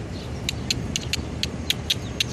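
Quick, sharp little clicks, about four or five a second at uneven spacing, from squirrels cracking and chewing seeds, over a steady low rumble of city traffic.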